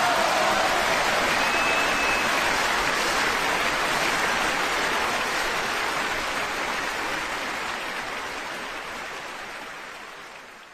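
Concert audience applauding at the end of a live orchestral performance, with a brief high whistle about a second and a half in; the applause fades out near the end.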